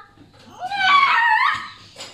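A woman's high-pitched, strained squeal of effort while arm wrestling, about a second long. It begins about half a second in, rises and then slides down in pitch.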